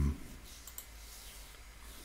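A few faint, scattered clicks of a computer mouse over quiet room tone.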